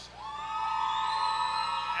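Audience members cheering with one long, high-pitched whoop that slides up at the start and is held for nearly two seconds, a shout for a graduate whose name has just been called.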